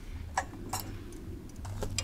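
A few light metallic clicks as the caravan's breakaway cable clip is handled and unhooked from the tow hitch, over a faint steady low hum.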